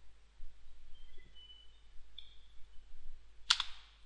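A computer keyboard key pressed once, a short sharp click about three and a half seconds in, over faint low hiss.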